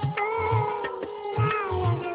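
Instrumental interlude of a Nepali devotional song: a melody instrument plays held, gliding notes over a steady tabla beat.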